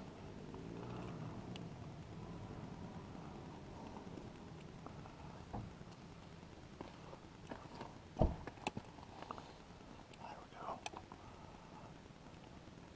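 Small clicks and taps from fingers working a safety pin into the back of a plastic wiring connector (back-probing a throttle position sensor plug), with one sharper click about two-thirds of the way through.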